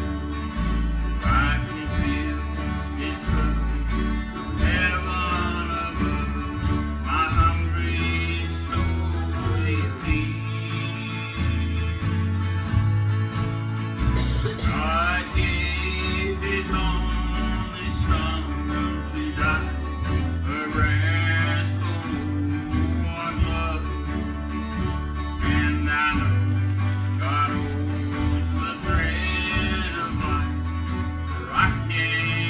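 Country-style song on acoustic guitar, with a steady bass line underneath and sliding melody lines above it.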